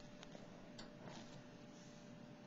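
Near silence: room tone with a faint steady hum and a few soft ticks.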